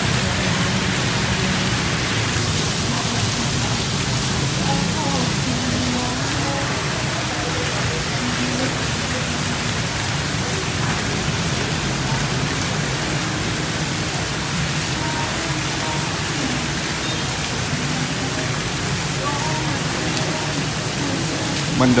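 Steady rush of an artificial waterfall, water pouring down rockwork into a pond.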